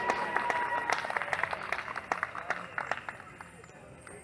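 Scattered clapping from an outdoor audience over crowd voices, starting as the stage music stops and thinning out and fading over the next few seconds.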